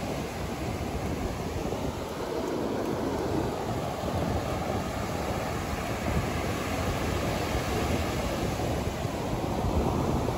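Ocean surf breaking and washing up the beach, a steady rushing noise with no pauses.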